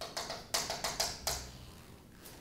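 Chalk writing on a chalkboard: a quick run of taps and short scratchy strokes through the first second and a half, then fading.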